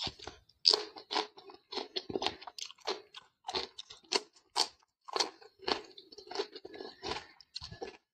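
A person biting and chewing raw cucumber slices close to the microphone: a steady string of crisp, wet crunches, roughly two a second.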